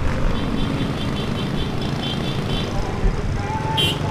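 A vehicle engine running steadily on the move, a low rumble under an even rushing noise. There are faint pulsing high tones through most of it and a short tone near the end.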